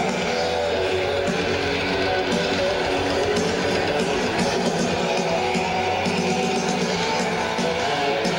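A heavy-metal band playing live, with distorted electric guitar over drums, at a steady level.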